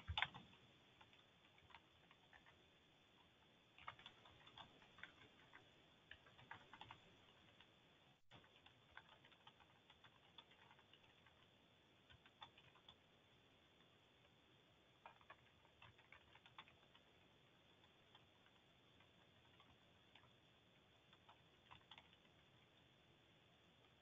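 Near silence on an open call line, broken by faint scattered clicks that come in small clusters, like typing or mouse clicks.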